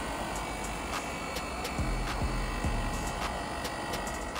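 Daikin split-system outdoor unit running steadily, compressor and condenser fans going, just restarted after a leak repair and a 3.7 kg refrigerant recharge.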